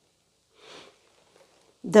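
A reader's short, faint breath drawn in through the nose at the microphone, about half a second in, during the pause before the closing words of the reading.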